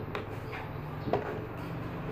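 Two light clicks about a second apart over faint room noise: plastic bottles, bowls and containers being handled on a tabletop while slime is mixed.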